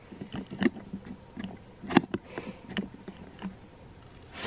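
Scattered light clicks and knocks of handling noise, with one sharper knock about halfway through and brief rustles.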